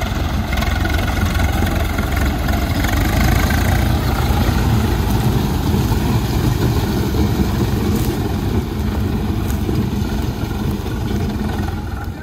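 Swaraj 855 tractor's three-cylinder diesel engine running steadily under load, driving a rear-mounted spinning fan that flings wet muddy material into the air.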